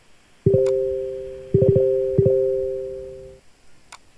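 Telegram Desktop message-notification chime, a two-tone ding sounding four times in under two seconds as several group-chat messages arrive, each ringing and fading before it stops after about three seconds.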